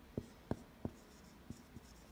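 Marker writing a short word, heard as a few faint, irregular taps and strokes of the tip.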